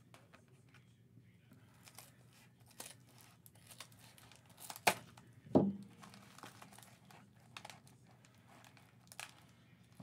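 An orange metallic bubble mailer being opened by hand, its plastic crinkling with scattered faint crackles and one sharper click about five seconds in.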